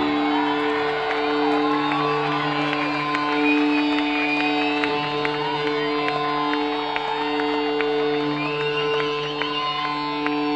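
A steady amplified drone from the stage, an electric guitar amp left sounding between songs at a loud rock concert. Over it the crowd cheers and whoops, with two rising whistles, one about three and a half seconds in and one near the end.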